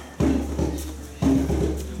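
Background music with a percussive beat: two strikes about a second apart over a steady low drone.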